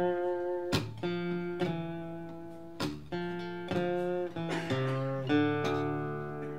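Acoustic guitar fingerpicked in a slow folk blues instrumental passage: single notes and bass notes plucked about once a second and left to ring.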